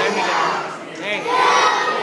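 A large group of young children singing and shouting together, many voices at once, loud.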